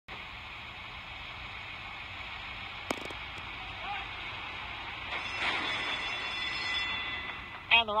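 Horse-race TV broadcast heard through a television speaker: a steady hiss of track background with a sharp click about three seconds in. From about five seconds in comes a louder rush of noise as the field breaks from the starting gate, and the race caller's voice starts at the very end.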